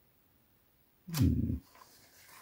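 Near silence for about a second, then a short sound with a sharp start, lasting about half a second.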